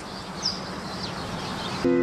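Outdoor ambience: a steady background hiss with two brief high chirps from birds. Music with sustained notes comes in just before the end.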